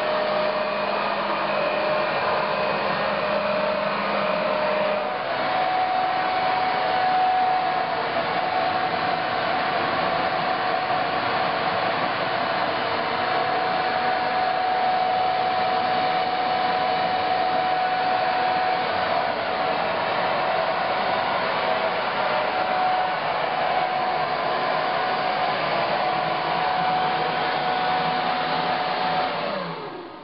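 Corded electric blower on a homemade hovercraft, running steadily and filling the skirt with air: a constant airy whine. Its pitch steps up slightly about five seconds in, and at the very end it is switched off and starts to wind down.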